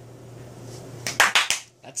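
A quick run of about four sharp knocks or clicks about a second in, with a couple of lighter ones just after, over a faint low hum.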